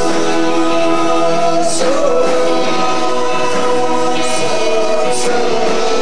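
A live rock band playing, with several voices singing long held notes in harmony over guitar and keyboard.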